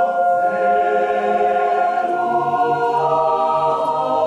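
Mixed choir of women's and men's voices singing held chords, moving to a new chord about three seconds in.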